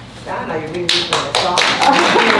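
Audience applause: a room of people clapping, breaking out about a second in and continuing, with voices over it.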